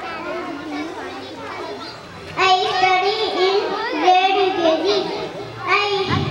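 A child speaking into a microphone. The voice is softer and mixed with background voices for the first two seconds, then comes in loud and clear from about two and a half seconds in.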